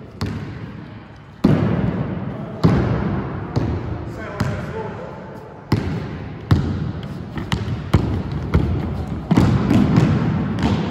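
Basketball dribbled on a wooden sports-hall floor: single bounces about a second apart, coming quicker in the second half as the dribble speeds up. Each bounce echoes briefly in the large hall.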